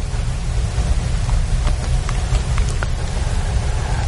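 Steady rushing background noise with a strong low rumble and a few faint ticks.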